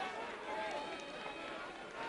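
Faint open-air stadium ambience with distant voices from the small crowd.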